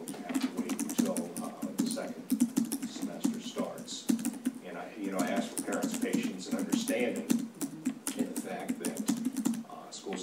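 Computer keyboard typing: rapid, irregular key clicks that run under a voice talking throughout.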